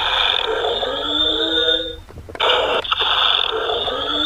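A robot piggy bank toy's small built-in speaker playing a tinny, distorted recorded sound, in two stretches with a short break about two seconds in.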